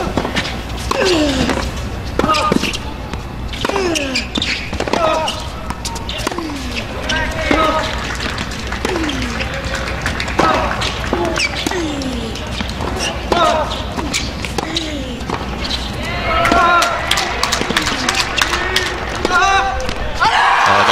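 Tennis rally: sharp racquet-on-ball hits and ball bounces about every second and a half, many hits joined by a player's short grunt that falls in pitch.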